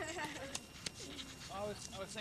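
Indistinct talk from people standing close by, with a single sharp click about a second in.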